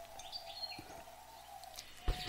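Faint bird chirps in the background during a pause in speech, over a faint steady hum.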